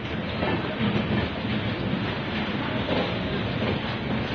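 Express train coaches rolling slowly past along a station platform: a steady noise of wheels running on the rails.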